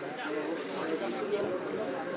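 People talking indistinctly, voices steady through the moment with no clear words.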